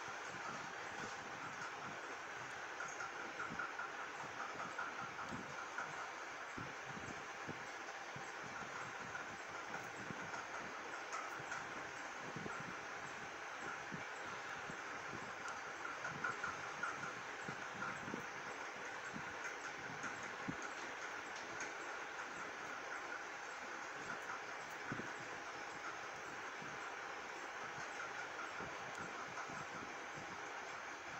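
Steady background noise with a faint constant tone and a soft flutter, like a fan or machine running.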